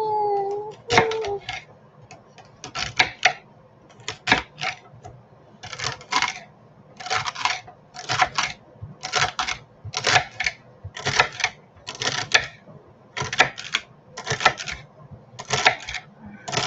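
Chef's knife slicing through celery sticks onto a wooden chopping board, each cut a crisp crunch with a knock of the blade on the board. The cuts come unevenly at first, then settle into a steady rhythm of about one cluster of cuts a second.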